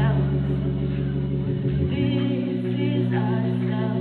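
Live band performance: a singer's voice over steady held low chords, with sung phrases coming in more clearly about halfway through.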